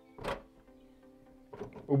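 WELOCK PCB41 smart cylinder lock's outer knob turned to throw the bolt and lock the door: one short mechanical slide about a quarter second in. The knob is engaged only because a valid code has just been entered.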